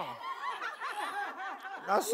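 Several people snickering and chuckling in short bursts, with a spoken word near the end.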